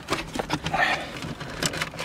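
Handling noise: scattered light clicks, knocks and rubbing as the rubber shifter boot and its metal plate are worked loose from the car's center console.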